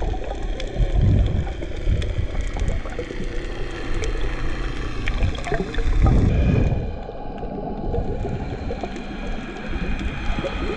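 Underwater sound picked up by a camera held beneath the surface on a reef: a muffled rush of water, swelling louder about a second in and again past the middle. Scattered faint clicks and crackles sit over it.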